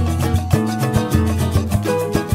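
Instrumental passage of a samba recording: a pulsing bass line and pitched accompaniment over steady percussion, with no voice.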